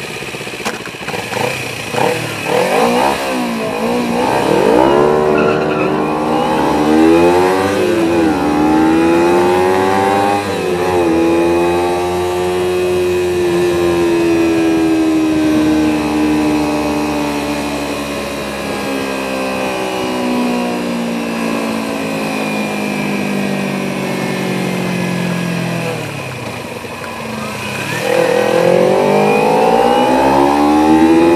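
Sport motorcycle engine pulling away and accelerating up through several gears, the pitch climbing and dropping back with each shift. It then cruises with the pitch slowly falling, and near the end it climbs again under acceleration.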